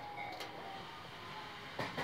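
Faint running noise inside the car of a JR West one-man local train, with a short knock near the end.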